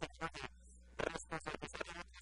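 A man talking in quick syllables over a steady low hum.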